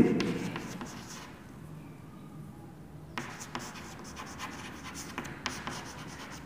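Chalk writing on a chalkboard: short scratching strokes as the letters are formed, with a brief pause, then the strokes resume about three seconds in.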